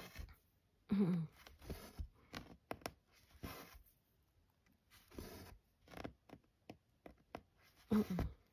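Cotton embroidery floss being drawn through Aida cloth and a needle pushed through the weave: a series of short rasping pulls and small clicks. A brief voiced sound, a hum or half-laugh, comes about a second in.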